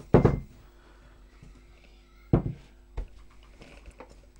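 Yeast dough being tipped out of a mixing bowl onto a wooden worktop: a few dull thumps of the dough and bowl against the board, the loudest right at the start, another a little past two seconds and a lighter one at three seconds.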